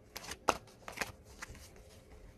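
Tarot cards being shuffled by hand: a quick run of short, sharp card snaps, about five in two seconds, the one about half a second in the loudest.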